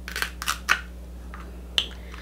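King crab leg shell cracking and snapping as it is broken apart by hand: a run of about five sharp cracks and clicks spread through the two seconds.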